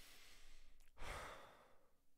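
A man's breathy sigh into a close microphone, starting about a second in and fading away. The rest is faint room hiss.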